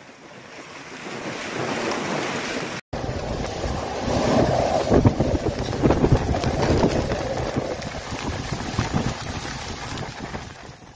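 Storm rain and hail coming down hard, growing louder. After a short dropout about three seconds in, a heavy wind-driven downpour follows, with gusts buffeting the microphone, at its loudest a couple of seconds later.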